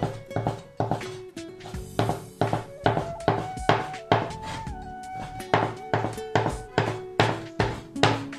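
Steel cleaver chopping through folded noodle dough onto a wooden cutting board: sharp knocks, about two to three a second, over background music with a melody.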